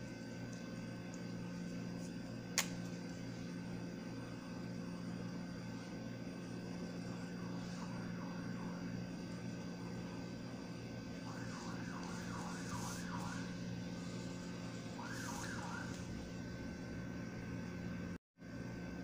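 A steady low hum with hiss and a single sharp click about two and a half seconds in. In the second half come faint, short squeaky strokes as a felt-tip marker is drawn across paper.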